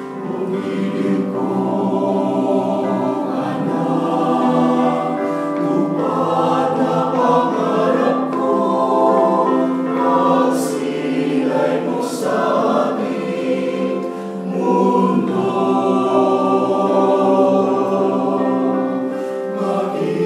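Small amateur choir of mixed men's and women's voices singing a Filipino Christmas song together, holding sustained chords.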